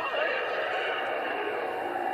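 Cartoon soundtrack played from a laptop's speakers and picked up in the room: a steady, held voice-like cry.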